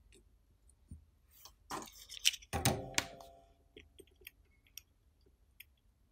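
Handling noise as a small circuit board is clamped into the metal clip of a helping-hands stand: a cluster of knocks and scrapes about two seconds in, the loudest followed by a short metallic ring, then a few faint clicks.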